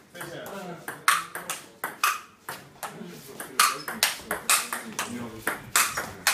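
Table tennis ball clicking back and forth between bats and table in a fast rally, a sharp hit or bounce every fraction of a second with an irregular rhythm.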